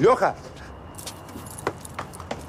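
A man's short shout right at the start, then running footsteps on pavement: a few sharp, scattered steps.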